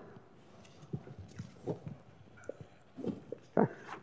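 Quiet room pause with a few faint, brief sounds scattered through it, then a spoken 'okay' near the end.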